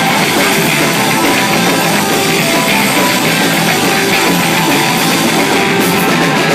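Instrumental rock band playing live: electric guitars over a drum kit, loud and unbroken.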